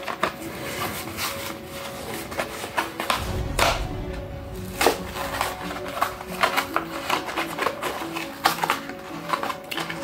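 Background music with steady held notes, over crackling and sharp clicks of a Hot Wheels car's cardboard card and clear plastic blister pack being handled and opened.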